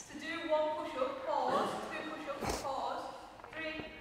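Quiet voices of people talking in a large hall, with a single thud about two and a half seconds in.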